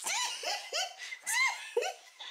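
A woman laughing in a run of about five high-pitched bursts, each rising and falling in pitch.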